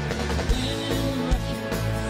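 Live rock band playing, with drum kit beats and guitar, loud and steady.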